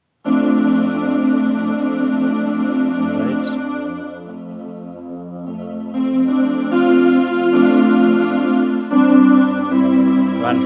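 Electronic keyboard playing slow held chords on a strings voice, entering just after the start, fading to a softer chord around the middle, then changing chords about six, seven and nine seconds in.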